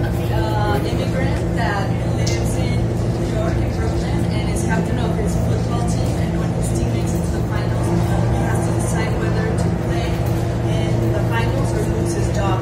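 A loud, steady low hum with faint, indistinct voices over it.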